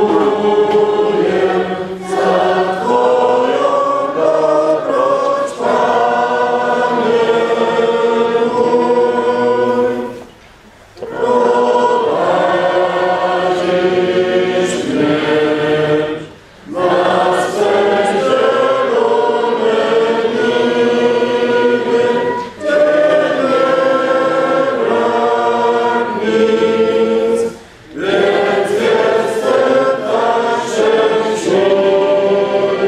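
A choir singing a hymn in several-part harmony, in long phrases broken by short breath pauses every five or six seconds.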